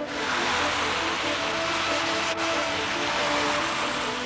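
Cars driving through deep floodwater: a steady rushing, splashing wash of water spray, under background music with held notes.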